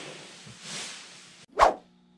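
Plastic masking sheeting rustling softly as it is handled, then one brief, loud sudden sound about one and a half seconds in.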